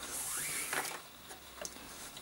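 Nylon paracord drawn through a knot loop and rubbing against itself, a brief hissing swish in the first second, followed by a few faint handling clicks.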